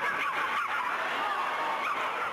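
Arena crowd cheering and shouting, many raised voices overlapping in high, sliding calls.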